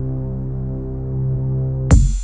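Minimal techno track in a breakdown: a low, steady synth drone with stacked overtones and a slight pulsing. Just before the end the beat comes back in with a loud hit.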